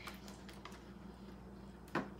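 Faint handling of a plastic gallon milk jug: a few soft ticks over a low steady hum, then one short, sharper plastic click near the end as the jug's cap is gripped to open it.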